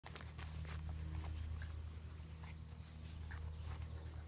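Young puppies playing, giving a few short, high yips, over a steady low hum.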